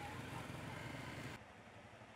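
Faint traffic noise on a street at night, slowly fading, then dropping abruptly to near silence about a second and a half in.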